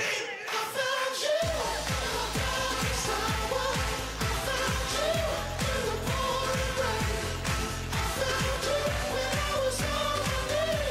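Live pop dance track with vocals over a steady kick-drum beat of about two strokes a second. The bass and drums drop out at the start and come back in about a second and a half in.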